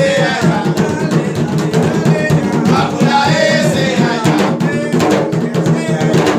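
Puerto Rican bomba barrel drums (barriles de bomba) played with bare hands in a dense, continuous rhythm of open and slapped strokes.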